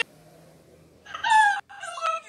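A woman laughing: a quiet first second, then a high-pitched drawn-out laugh note about a second in, and a shorter one near the end.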